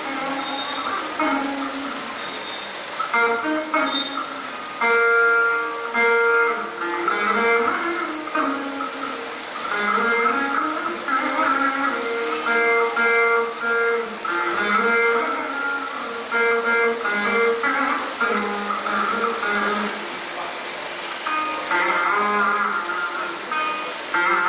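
Saraswati veena playing Carnatic music in raga Surati. Plucked notes are bent and slid between pitches in ornamented gliding phrases.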